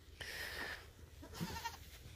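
Young goat kids bleating: a breathy call early on and a short, quavering bleat about a second and a half in.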